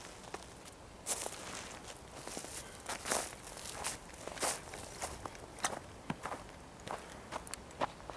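Footsteps of a person walking on a snow-covered forest path, irregular steps at roughly two a second, starting about a second in.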